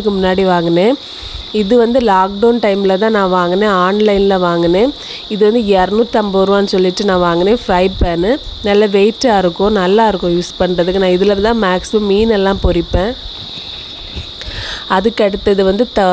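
Crickets chirring in a steady, unbroken high drone, with a person's voice over it that pauses briefly about a second in, again around five seconds, and for a couple of seconds near the end.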